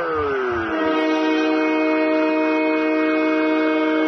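Arena goal horn blowing a long, steady multi-note chord after a home-team goal. It settles in about half a second in as a falling tone fades out.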